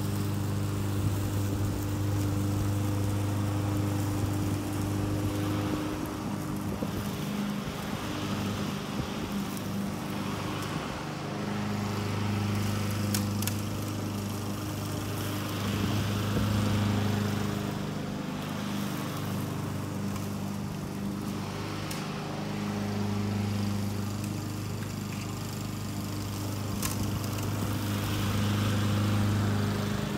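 Honda walk-behind lawn mower's single-cylinder four-stroke engine running steadily while cutting grass, its hum swelling and fading as the mower moves toward and away across the lawn.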